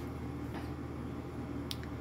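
Quiet room tone with a steady low hum, and one brief faint click near the end as the paper page is handled.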